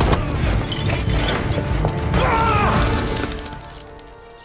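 A film soundtrack with music over fight sound effects of blows and crashes. It fades down near the end.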